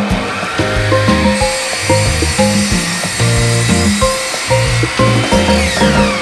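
Background music with a steady beat over an electric miter saw spinning up with a high whine and cutting through scrap wood; the motor winds down with a falling whine near the end.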